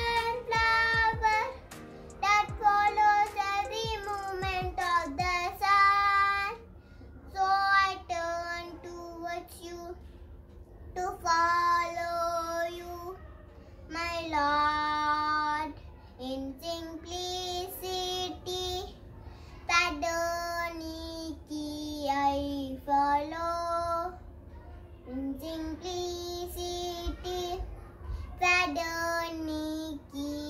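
A young boy singing a prayer song solo, in phrases of a second or two with short breaths between.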